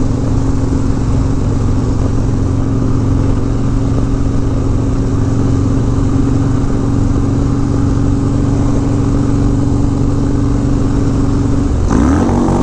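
Harley-Davidson Dyna's V-twin engine running at a steady cruise, holding one pitch throughout, with wind and road noise, heard from a microphone mounted on the motorcycle.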